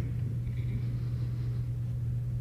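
Steady low hum with a faint rumble underneath: the room's background sound with no one speaking.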